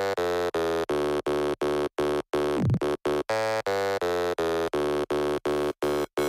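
Electronic intro music: a synthesizer chord held on one pitch and chopped into even, rhythmic pulses, nearly three a second, with a falling sweep about halfway through.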